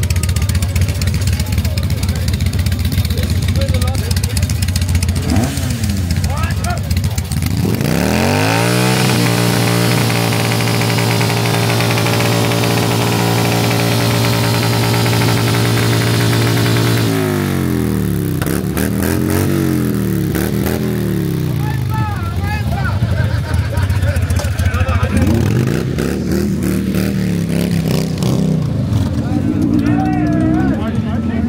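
V-twin cruiser motorcycle engine revved while standing: it idles, then about eight seconds in the revs climb and are held high for around eight seconds. It then drops and is blipped up and down several times before climbing again near the end.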